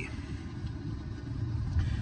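Low, steady vehicle rumble, heard from inside a stationary car, growing a little louder near the end.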